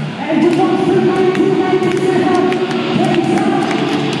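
Live heavy band playing through stage amplification: a long sustained note holds for about three seconds starting just after the start, with scattered sharp clicks and a new note near the end.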